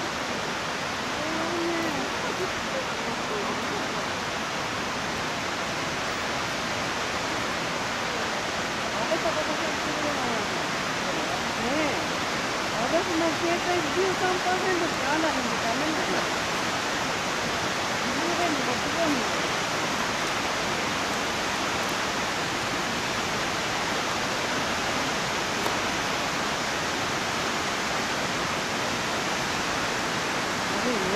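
Rushing water of a cascading mountain stream, a steady, even rush. Faint, indistinct voices talk over it through the middle.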